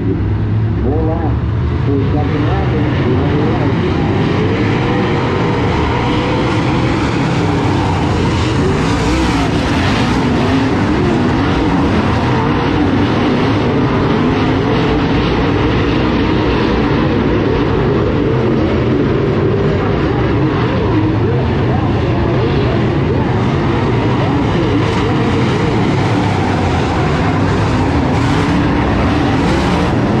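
A field of DIRTcar UMP Modified dirt-track race cars at speed: many V8 engines running at once, their pitches rising and falling over one another as they rev through the turns, loud and continuous.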